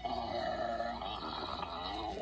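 A man's voice making one long, drawn-out comic eating noise as the cartoon weatherman gobbles candy corn, heard through a tablet's speaker. It stops suddenly after about two seconds.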